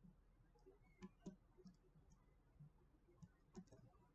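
Near silence: quiet room tone with a few faint scattered clicks, a pair about a second in and a few more near the end.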